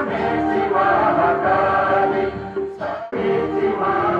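A choir singing a slow, solemn song in long held notes, with a brief break about three seconds in.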